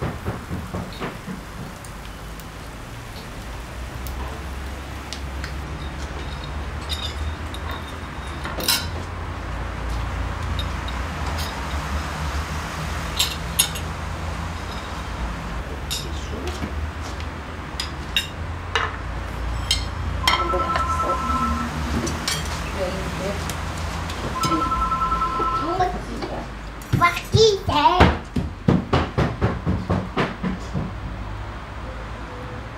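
Kitchen sounds of eggs frying in a pan on a gas stove, with scattered clinks and knocks of dishes and utensils. A steady two-note tone sounds twice past the middle, each time for about a second and a half, and voices come in near the end.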